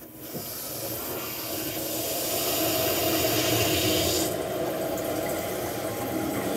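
Water rushing through a toilet's fill valve as the tank refills at full supply pressure. The hiss builds over the first few seconds and its highest part drops away about four seconds in, leaving a lower rush of water.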